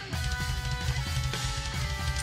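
Progressive metal instrumental: electric guitars playing held chords over a busy drum kit, the chord changing about a second in.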